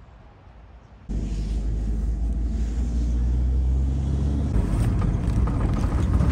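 Faint room tone, then about a second in the loud, steady rumble of a moving bus heard from inside the cabin: engine drone and road noise, changing in character about four and a half seconds in.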